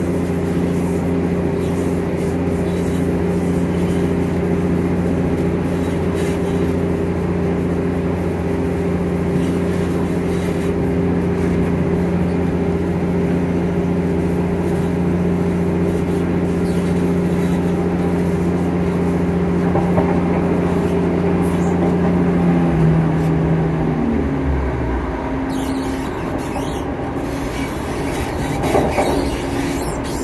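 Class 170 Turbostar diesel multiple unit running at speed, heard from the gangway between carriages: a steady diesel engine drone over wheel-and-track rumble. A little over twenty seconds in, the engine note falls in pitch and dies away, leaving the running noise of the carriages.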